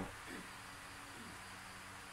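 Quiet pause: faint room tone with a low steady hum and a soft high hiss.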